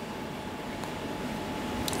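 Room tone: a steady low hiss with a faint thin steady tone, and one small click near the end.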